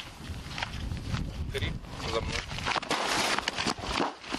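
Footsteps of soldiers moving off quickly on a dirt track over a low rumble, turning into a louder scuffle of running feet near the end. A short spoken command comes about a second and a half in.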